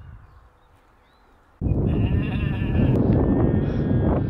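A sheep bleating loudly: a long bleat that starts suddenly about one and a half seconds in, after a quiet opening.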